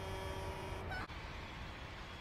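Film soundtrack at low level: a steady low rumble with a few faint held tones, which drops out abruptly about a second in and carries on more quietly.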